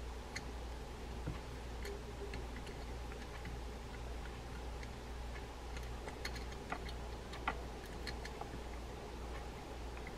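Faint, irregular small metal clicks and ticks as a nut is worked by hand onto the threaded pinion of a D.A.M. Quick 441N spinning reel, being started carefully so it does not cross-thread. A steady low hum runs underneath.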